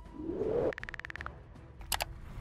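Ancient Tumble video slot sound effects as a new free spin begins: a rising swoosh, then a quick run of about a dozen ticks on one tone, and a short sharp hit near the end.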